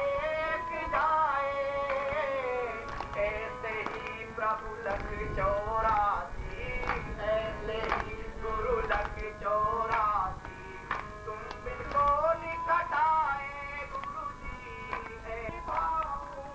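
Devotional song (bhajan): a man's voice singing a sliding melody in long phrases, with instrumental accompaniment and regular percussion strikes.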